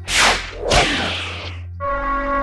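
Two whoosh sound effects, each a quick swish sweeping down from high to low, over a low steady music drone; a held synth chord comes in near the end.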